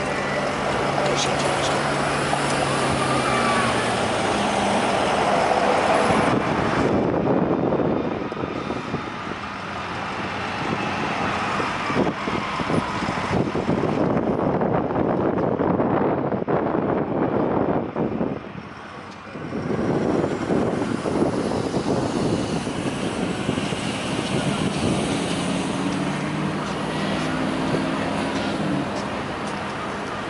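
Diesel locomotives of a BNSF freight train passing, their engines running with a low steady hum that stands out near the start and again near the end, over a constant rushing noise. The noise dips briefly about two-thirds of the way through.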